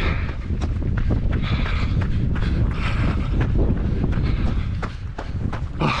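Running footsteps on a gravel track, a quick steady stride, over a continuous low rumble of wind buffeting the microphone.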